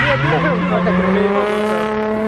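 Drift car engine running at high revs: its pitch climbs over the first second, then holds high and steady.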